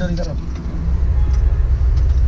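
A truck's diesel engine idling steadily, a low, even rumble heard from inside the cab.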